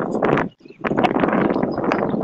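Rough rushing and rubbing noise on a phone microphone during a live video call, the kind made by wind and by a phone being carried while moving. It cuts out briefly about half a second in, then comes back.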